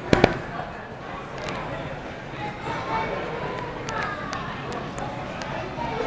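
Background chatter of a busy food court, with two sharp knocks right at the start from the camera phone being handled as it is swung around.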